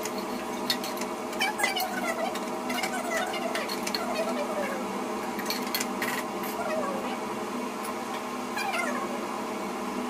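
A cat meowing in several long calls that waver and fall in pitch, over the clinks of a spoon against a steel cooking pot and a steady hum.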